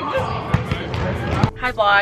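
Basketball bouncing on a hardwood gym floor: a few separate thumps over background voices in the gym.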